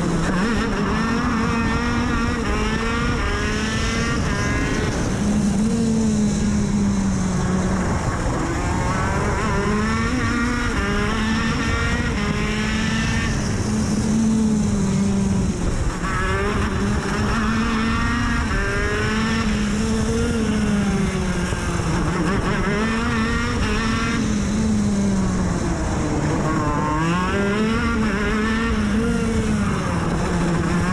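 Two-stroke racing kart engine heard from onboard at speed, its note climbing as it accelerates out of each corner and dropping as it brakes for the next, over and over through the lap.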